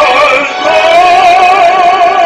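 Baritone singing with instrumental backing, the voice moving up about half a second in onto a long held note with a steady vibrato.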